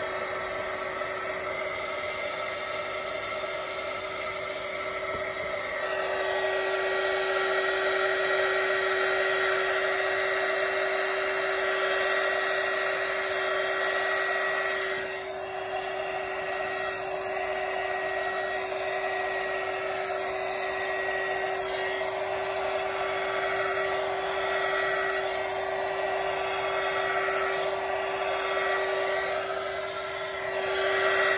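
Hair dryer running steadily, blowing wet acrylic pour paint out into a bloom. It gets louder about six seconds in and dips briefly around the middle.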